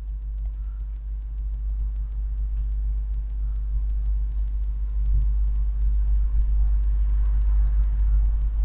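A steady low hum that grows gradually louder, with faint quick ticking, about five a second, above it.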